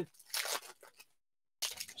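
Plastic wrapper of a trading-card pack crinkling as it is handled, in two short bursts: one about a third of a second in and one near the end.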